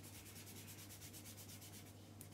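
Faint rapid scratching of a pen colouring in on paper, quick back-and-forth strokes about ten a second, over a low steady hum.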